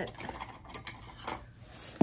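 A few faint, scattered clicks and knocks of small objects being handled and moved about on a desk.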